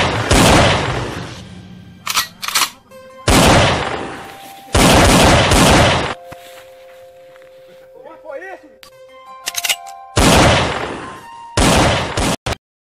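A series of loud explosion blasts, about five in all, each dying away over a second or so, with a quieter lull in the middle, as charges go off in the grass and throw up white smoke.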